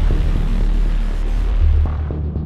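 Background soundtrack music built on a loud, deep, steady bass drone.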